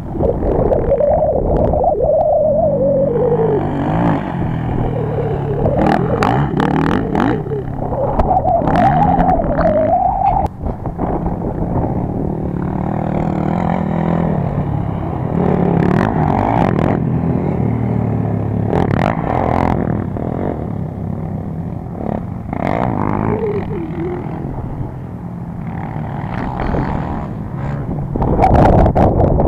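Racing quad (ATV) engines revving, their pitch climbing and falling several times over a steady low engine drone, with gusts of wind buffeting the microphone.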